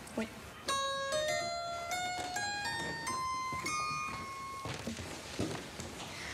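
Harpsichord playing a rising scale of single plucked notes, about three a second, climbing roughly an octave and stopping about three-quarters of the way through.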